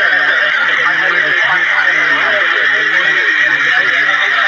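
Heavy rain pouring steadily onto a flooded street, a loud, even hiss.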